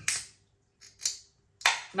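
Ring-pull of a 500 ml aluminium beer can being lifted: short sharp cracks and a brief hiss of escaping gas about a second in, with a sharp click near the end.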